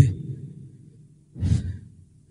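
A man's single short breath or sigh into the microphone, about a second and a half in, in a pause between phrases of speech.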